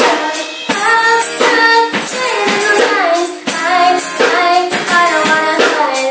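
A young girl singing into a microphone over a live church band, with a steady drum beat underneath.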